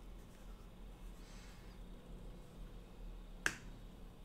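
A single sharp click about three and a half seconds in, over quiet room tone with a steady low hum.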